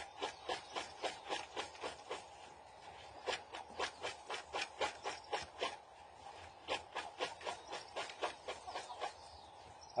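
Milled dry coffee tossed again and again in a plastic bowl to winnow off the husks: a dry rattling swish with each toss, about three or four a second, with a few short pauses.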